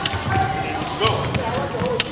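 A long jump rope slapping the wooden gym floor as it is turned, with jumpers' feet landing on it in repeated slaps and thuds, over background voices.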